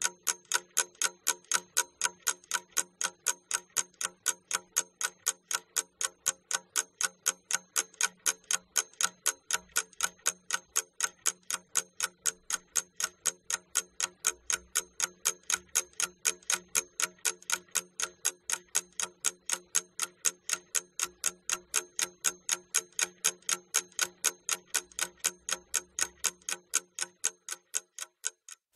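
Steady ticking of a clock sound effect, about three ticks a second, counting off the pupils' thinking time for the task.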